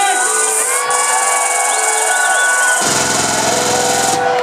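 Electronic dance music played loud through a venue's sound system at a live DJ set, with held synth tones and gliding pitched sounds. About three seconds in, a low buzzing bass comes in suddenly and cuts off near the end.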